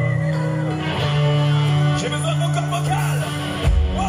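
Live rock band playing: held guitar and bass notes under a male voice singing, then the full band crashes in with heavy drums and bass about three and a half seconds in.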